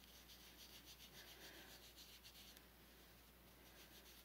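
Near silence with faint rubbing strokes over the first couple of seconds, fading after, as foundation is wiped off a hand.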